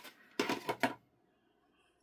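A short clatter of clicks from craft supplies being handled on the worktable, about half a second in, followed by near silence.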